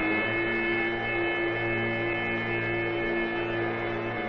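Dramatic background music: long held low notes from wind instruments, over a steady high-pitched hum in the old soundtrack.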